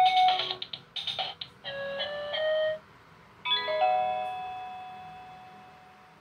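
Electronic chime melody from a baby's musical light-up toy: a quick run of bright notes, a short pause, then a final chime about three and a half seconds in that rings and fades away.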